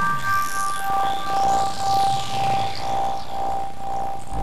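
Electronic soundtrack music: held synthesizer tones under high sweeping glides that rise and fall, with one held note pulsing about twice a second from about a second in.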